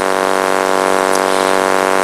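A loud, steady buzzing hum at one unchanging pitch with many overtones, cutting off suddenly just as speech resumes.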